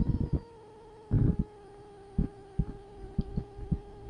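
Faint steady electrical hum with a series of soft, irregularly spaced low thumps, the loudest about a second in.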